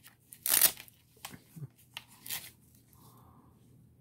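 Velcro fastener on a fabric wrist strap being pulled apart and handled: one short rip about half a second in, then a few softer rustles and rips.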